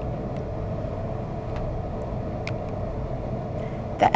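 Steady low background rumble, with a few faint ticks.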